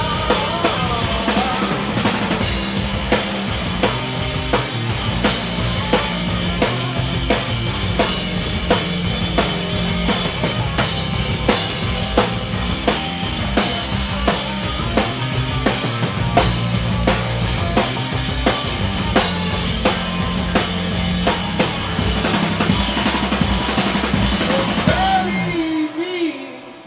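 Live stoner rock band playing at full volume: distorted electric guitars and bass over a drum kit keeping a steady beat. The music cuts off suddenly near the end as the song finishes.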